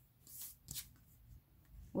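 Oracle cards handled on a table: a few faint slides and taps as a card is drawn from the deck and laid down.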